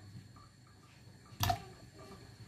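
Mostly quiet, with one short, sharp knock about one and a half seconds in.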